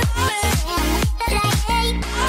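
Background dance music with a steady kick-drum beat, about two and a half beats a second, under a wavering melody.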